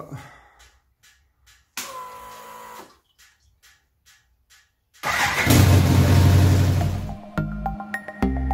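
BMW K1100's liquid-cooled inline four, cold at about 28 degrees, started about five seconds in and running for a couple of seconds, after a brief electric whine about two seconds in that fits the fuel pump priming. Background music with a steady beat comes in near the end.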